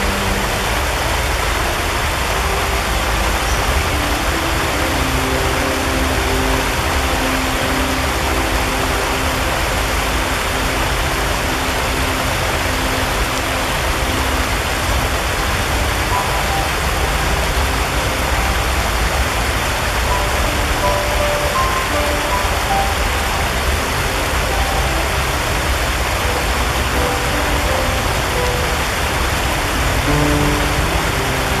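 Shallow rocky stream rushing and splashing over stones, a steady, full-bodied rush of running water. Faint held musical notes sit underneath it.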